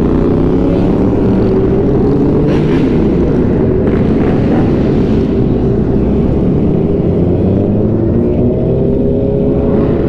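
Sportbike engine running at highway speed under a steady rush of wind. The engine pitch climbs over the last couple of seconds as the bike accelerates.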